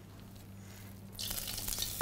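Hot oil in a wok starts sizzling about a second in as marinated beef and sliced onions land in the pan, the sizzle growing louder as more meat goes in.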